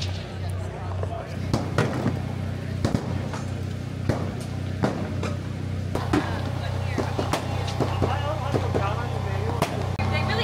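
Scattered distant gunshots from the range, about seven sharp cracks roughly a second apart, over a steady low hum and faint background voices.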